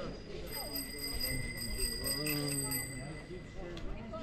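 People's voices talking, with a steady high ringing tone that starts about half a second in and stops near the end.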